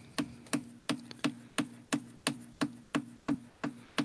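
A sharp knock or tap repeating evenly about three times a second, each with a brief low ring after it.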